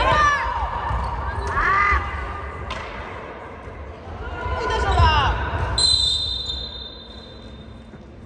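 Futsal play on an indoor court: sneaker squeaks on the hall floor and a couple of sharp ball strikes. A long, high whistle comes near the end and fades out in the hall's echo.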